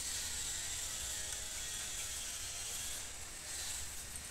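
Raw potato being sliced thin on a boti, a fixed upright kitchen blade: a steady high scraping hiss as the potato is drawn through the blade.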